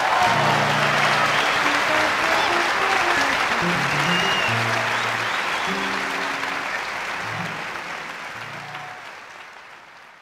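Live concert audience applauding at the end of a song, with a few low plucked notes played under the applause. It fades out steadily over the second half.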